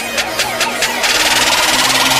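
Intro sting of electronic music and sound effects: a fast pulsing beat that about a second in turns into a loud, dense rush of hissing noise building toward the drop.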